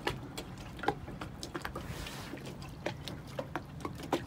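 Quiet ambience aboard a moored sailboat: scattered small clicks and ticks over a low steady hum, with a brief soft rush about halfway through.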